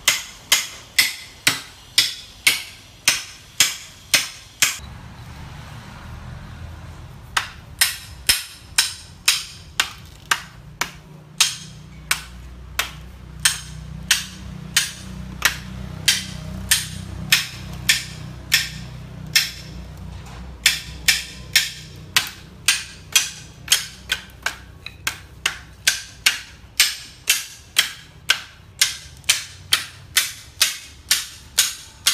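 A machete blade striking a bamboo pole over and over, sharp ringing chops about two to three a second, with a pause of a few seconds near the start.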